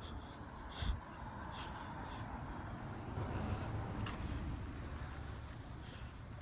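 Steady low rumble of road traffic, swelling a little midway, with a few light footsteps on the road.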